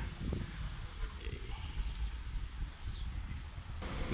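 Faint outdoor ambience picked up by a phone's microphone while filming: a low, uneven rumble with a light hiss above it, no distinct event standing out.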